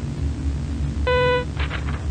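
A single short, buzzy electronic beep about a second in, lasting about a third of a second, over a steady low hum. It is the animatronic's signal that the face shown is a criminal's.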